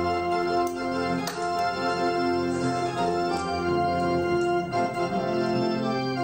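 Church keyboard with an organ sound playing sustained hymn chords, the introduction before the congregation sings.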